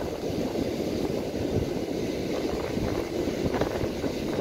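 Strong wind buffeting the phone's microphone: a dense, low rumble that flutters without a break.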